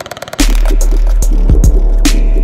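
Heavy dubstep track: a fast stuttering build gives way, about half a second in, to the drop, a loud, steady deep sub-bass with sharp drum hits over it.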